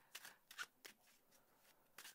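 Faint, scattered soft clicks and flutters of a tarot deck being shuffled by hand, cards slipping from one hand to the other.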